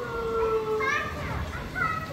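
Children's voices in a crowded room: a high call held for about a second and slowly falling, then short swooping voice sounds near the middle and again near the end.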